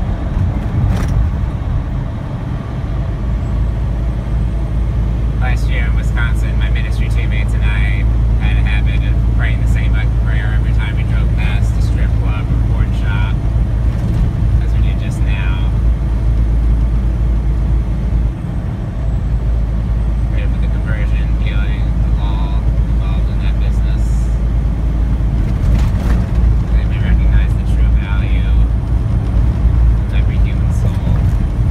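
Steady low drone of a semi truck's diesel engine and tyre noise, heard from inside the cab at highway speed.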